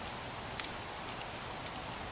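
Sections of a solar lamp's thin hanging-hook pole being screwed together by hand: a single faint click about half a second in and a few fainter ticks, over a steady hiss.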